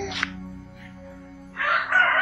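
A rooster crowing: one long call that starts about one and a half seconds in, over quiet, steady background music.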